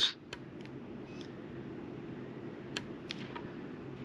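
Faint scattered ticks and clicks of a metal-tipped weeding pick lifting small cut pieces of vinyl off the backing sheet, a few in the first second and a cluster near the end, over a low steady hum.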